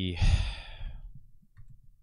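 A man's long breath out, a sigh into a close microphone with a low puff at the start, fading out over about a second; a few faint clicks follow near the end.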